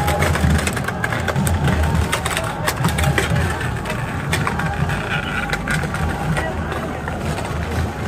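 Massive wooden chariot wheels rolling on the road with a low, continuous rumble, with scattered sharp wooden knocks and crowd voices over it.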